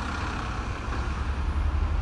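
Steady low rumble of street traffic, a little louder near the end.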